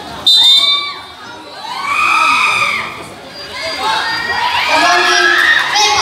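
A short, loud whistle blast about a third of a second in, as the game starts with the tip-off, then a crowd of spectators, many of them children, shouting and cheering, swelling twice.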